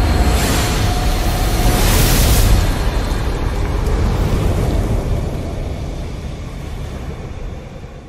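Fire-and-whoosh sound effect for an animated burning logo: a deep, noisy surge that swells to its loudest about two seconds in, then slowly dies away.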